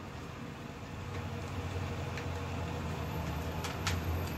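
A fan running with a steady low hum and hiss, and a couple of faint clicks near the end.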